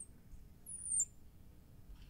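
Marker squeaking on a glass lightboard while writing: one short high squeak that falls in pitch, about a second in, over faint room tone.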